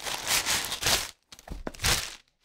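Plastic courier mailer bag crinkling and tearing as a cardboard box is pulled out of it: dense rustling for about a second, then a few light clicks and one more short rustle near the end.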